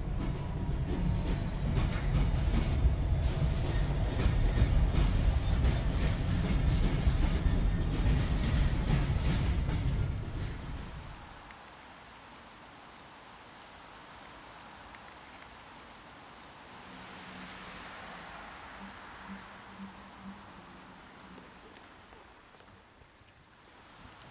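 A loud, deep rumble with hiss and clatter that dies away about ten seconds in, leaving a faint steady background with a few soft low tones.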